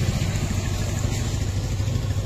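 An engine idling steadily, a low, even drone.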